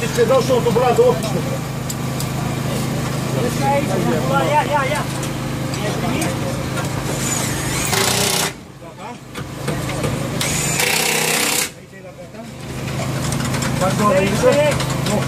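Voices talking over a steady low engine hum. The sound dips sharply twice in the second half.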